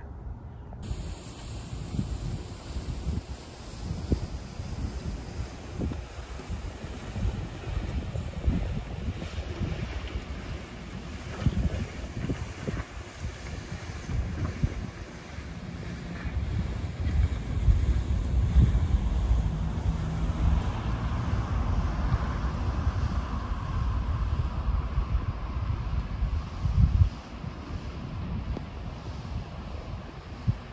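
Wind buffeting the microphone in uneven gusts, a low rumble that grows stronger in the second half.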